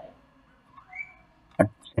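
A brief whistle-like tone about a second in that slides upward in pitch and then holds, followed near the end by a short spoken syllable.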